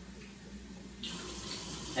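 Kitchen tap running into the sink, the water growing louder about a second in.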